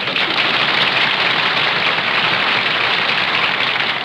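Studio audience laughing and applauding, steady and loud, on a band-limited 1940s radio broadcast recording.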